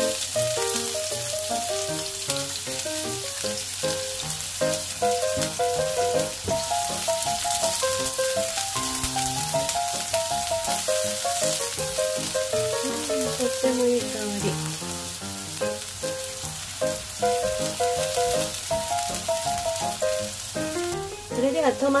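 Chopped green onions and garlic sizzling in hot oil in a nonstick frying pan, stirred with a spatula, under background music with a stepping melody.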